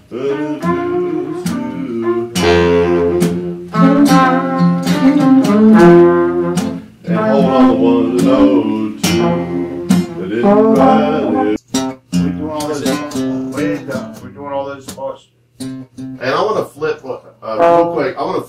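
Acoustic guitar strumming chords while a small horn section of trumpet, saxophones and trombone plays the bridge of a song together in a rehearsal run-through. The playing grows sparser and breaks up in the last few seconds.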